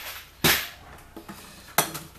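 Two sharp knocks of hard objects set down on a tabletop, about half a second in and again near the end, with a faint click between them.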